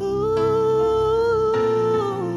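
A woman's voice holding one long note, gliding slightly up at the start and then steady, over sustained keyboard chords that change about one and a half seconds in.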